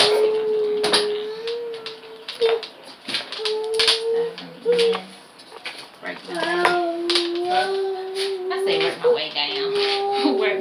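A woman humming a tune in long held notes, with the short scratchy strokes of a hairbrush pulled through a damp wig's hair.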